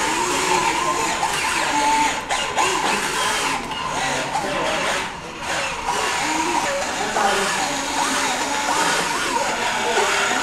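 Overlapping chatter of many onlookers' voices, no single voice clear, over a continuous whir that fits a small wheeled robot's electric drive motors.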